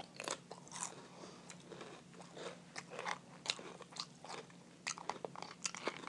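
A run of faint, irregular clicks and crunches close to the microphone, some twenty short ones spread unevenly.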